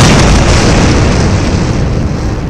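Explosion sound effect of a torpedo hitting a warship: a sudden loud blast, then a long, heavy rumble that eases only slowly.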